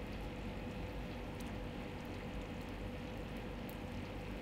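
Thick chicken curry gravy simmering faintly and steadily in a pan, with a faint steady hum underneath.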